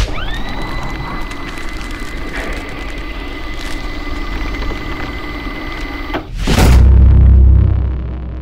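Logo-animation sound effects: a tone rises in pitch at the start and holds steady for about six seconds, then cuts off into a quick whoosh and a loud, deep boom.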